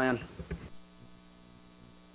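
A man's last word, then a faint, steady electrical mains hum with many evenly spaced tones, starting a little under a second in.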